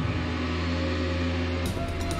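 Tense background music for a drama: a steady low droning chord, with a brighter, hissing swell coming in about one and a half seconds in.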